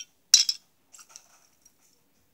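Small plastic toy pieces clattering briefly as a hand picks through them, about a third of a second in, followed by a couple of faint clicks.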